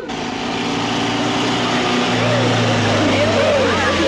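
Truck engine running with a steady drone under road noise, with voices talking over it from about halfway.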